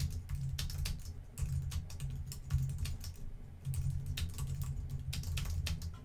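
Typing on a computer keyboard: a quick, uneven run of key clicks with a couple of brief pauses.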